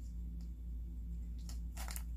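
Quiet handling of a plastic egg and plastic spoons over a steady low hum, with two faint short rustles near the end.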